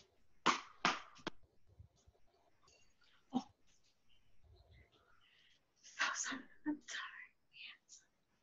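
Faint, indistinct voice sounds with no clear words: short breathy, whisper-like bursts near the start, a single sharp one about three and a half seconds in, and a cluster of them in the last two seconds.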